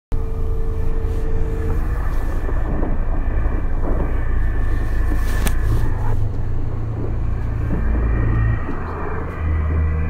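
A steady low rumble with a hiss over it, of the kind a moving road vehicle makes, shifting in level a few times, with one sharp click about halfway through.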